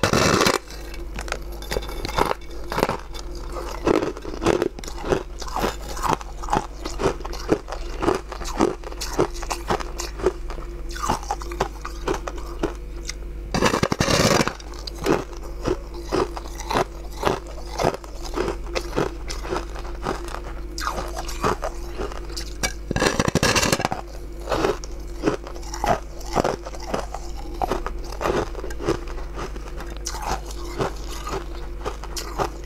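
Biting and crunching into a large frozen slab: many sharp, crisp cracks, with three longer, louder crunches at the start, about halfway and about three quarters through. A steady low hum runs underneath.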